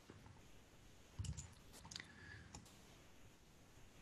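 Near-silent room tone with a few faint clicks from computer use, about a second in and twice more about two seconds in.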